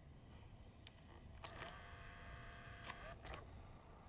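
Video camera's zoom motor running for about two seconds: a steady whir that starts and stops with clicks, with a single click about a second before it.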